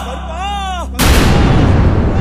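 A male voice chants a drawn-out syllable, then about a second in it is cut off by a sudden, loud blast of explosive noise that keeps going as a dense rumble, like a gunfire or firecracker sound effect laid into the devotional track.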